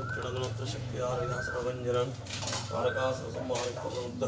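Small metal clinks of brass puja vessels and utensils being handled, over a steady low hum with voices in the background.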